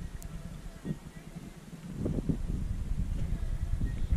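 Steady low rumble of a yacht under way, with wind buffeting the microphone and growing louder about halfway through; a faint brief voice is heard about two seconds in.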